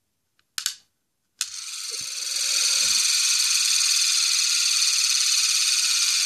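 Hurricane balls, two glued metal balls, spinning fast on a glass mirror. After a short click, a high-pitched whirring hiss starts suddenly about a second and a half in, grows for about a second, then holds steady.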